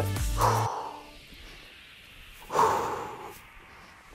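Background music with a steady bass beat that cuts out under a second in, followed by one sharp, breathy exhale about two and a half seconds in from a woman straining through an abdominal exercise.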